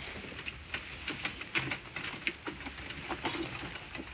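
Wire cage trap and leafy branches being handled and set down: irregular light clicks, rattles and rustles.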